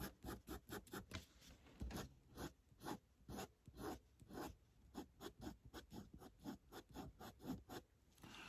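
Faint scratching of a fine-tip felt line marker on paper, drawing short curved strokes in quick succession, about four a second.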